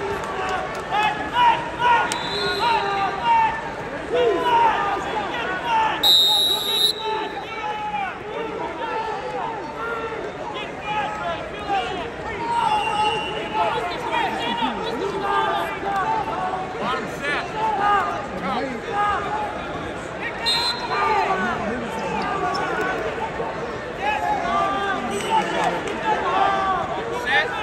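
Arena crowd of spectators and coaches shouting at once, many overlapping voices with no let-up.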